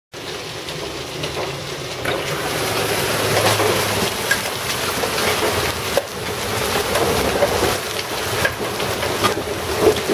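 Hailstorm: marble- to half-dollar-sized hail pelting the ground, pavement and porch in a dense, steady clatter with many sharp individual impacts. It grows louder about two seconds in.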